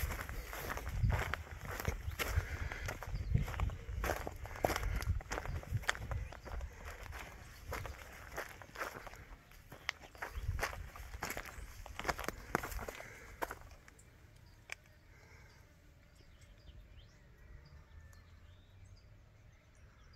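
A person's footsteps on rocky limestone ground and through scrub brush, irregular steps that stop about two-thirds of the way through, leaving only faint outdoor background.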